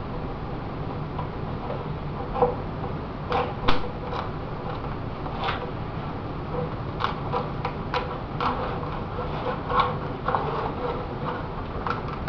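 Scattered light clicks and small knocks as a fiberglass model-airplane fuselage and its mold are flexed and worked by hand to break the part free at the tail, over a steady background hum.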